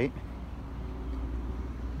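Faint hum of a vehicle engine in the distance over a steady low outdoor rumble.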